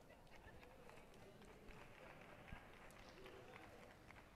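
Near silence: faint room noise with a few soft clicks.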